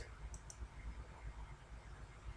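Computer mouse button clicking: two short, faint clicks close together about a third of a second in, as a program window is closed.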